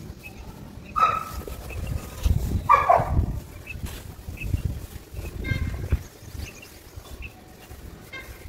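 Hands digging into and crumbling dry, gritty soil and sand, making a run of low, dull crunching thuds. An animal calls loudly twice over it, about one second in and again near three seconds, the second call falling in pitch.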